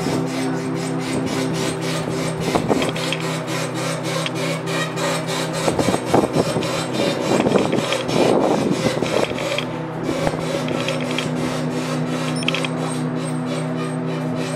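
Lifeboat davit winch hoisting a ship's lifeboat back aboard: a loud cranking, with a steady machine hum under a rapid, regular clicking. A stretch of scraping and rubbing comes about six to nine seconds in.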